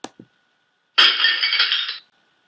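A mouse click, then about a second later a breaking-glass sound effect that plays for about a second and cuts off suddenly.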